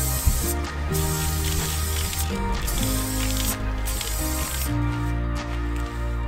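Aerosol spray-paint can hissing in four bursts of about a second each, stopping a little before the end, over background music.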